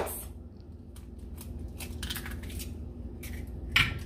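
Eggs being handled and cracked against the rim of a mixing bowl: faint scattered taps and clicks, with a sharper crack near the end.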